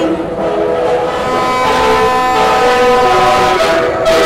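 Several vehicle horns held down together in long, steady blasts over a crowd, some joining and dropping out partway through.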